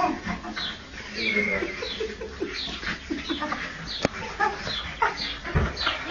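A puppy whimpering in short, high, falling squeaks, a few a second. There is a sharp click about four seconds in and a low thump near the end.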